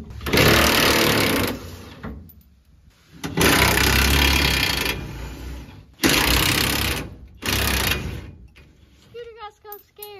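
Cordless impact wrench hammering in four bursts, the longest about two seconds, loosening the fasteners of the fuel tank straps.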